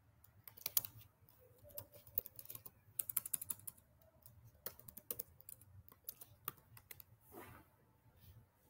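Faint computer keyboard typing: irregular bursts of quick key clicks with short pauses between them, and a brief soft rush of noise near the end.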